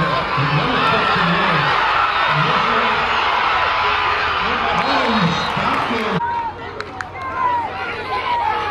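Football crowd in the bleachers cheering and yelling during a play, with a nearby man's voice shouting among them. The dense cheering cuts off suddenly about six seconds in, leaving scattered shouts.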